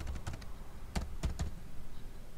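A few keystrokes on a computer keyboard, typing digits into a calculator: one click at the start, then three in quick succession about a second in.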